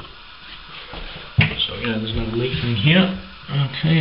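A man's voice talking, with one sharp click about a second and a half in.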